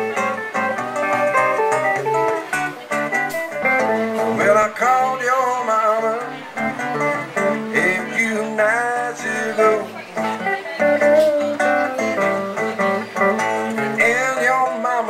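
Live blues guitar: an electric guitar plays a lead with bent notes over a strummed acoustic guitar rhythm.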